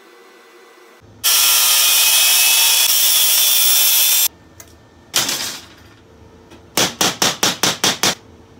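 An angle grinder's cut-off disc cuts through stainless wire mesh for about three seconds with a loud, steady hiss, then stops abruptly. After a single metallic clatter, a hammer taps the cut mesh piece against the steel table in a quick run of about seven strikes near the end.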